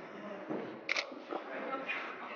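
SLR camera shutter firing, two short clicks about a second apart, over low room chatter.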